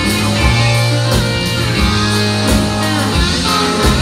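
Live country band playing an instrumental passage with no singing: strummed acoustic guitar, electric guitar and drums, with a steel guitar sliding between held notes.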